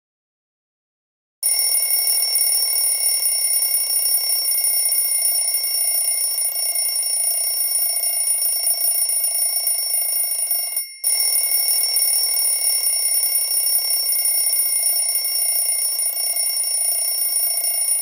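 A steady, high-pitched electronic ringing tone over a hiss, starting about a second and a half in and cutting out for a moment about eleven seconds in.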